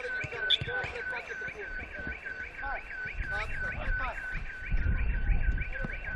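An electronic alarm warbling steadily over a held tone, at about four rising chirps a second. A low rumble swells about five seconds in.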